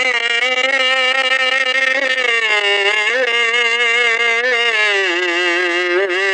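A man's voice drawing out one long sung note in a lamenting recitation, the pitch wavering and sinking lower about five seconds in. The sound is thin, with no bass, as on an old tape recording.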